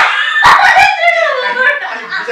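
Loud, excited high-pitched voices: yelps, shouts and laughter. A few dull thuds come about half a second in.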